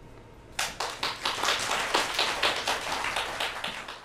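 Audience applauding, the clapping starting suddenly about half a second in.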